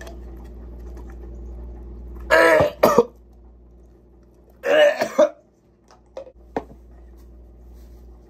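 A man gagging and retching twice, about two seconds in and again about five seconds in, as he takes a large wad of dip tobacco out of his mouth: a weak gag reflex bringing him close to vomiting without actually throwing up. A short click follows near the end.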